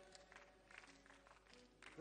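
Near silence: faint room tone with a few soft clicks, in a pause between sung lines.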